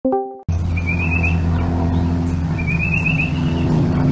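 A short tone at the very start, then a steady low engine-like hum with a high chirping trill heard twice.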